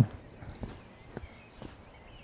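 Footsteps of a hiker on a rocky path: a few soft, short steps about half a second apart.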